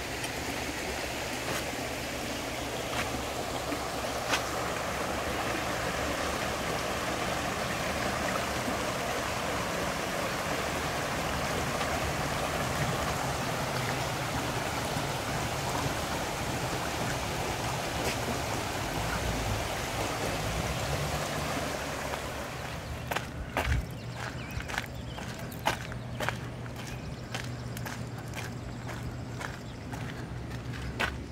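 A creek flowing steadily, a constant rush of water. About 22 seconds in the rush drops away to a quieter background broken by a series of sharp clicks and knocks.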